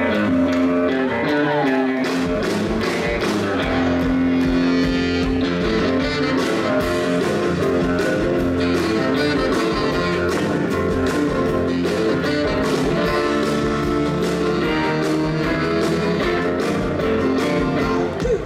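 Live blues band playing an instrumental passage: electric guitar, piano-style keyboard and saxophone over drums keeping a steady beat.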